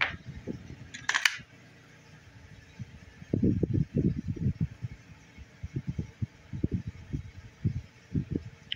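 Handling noise from fingers turning an AA battery right at the camera's microphone: a short scrape about a second in, then from about three seconds a run of dull low bumps and rubs.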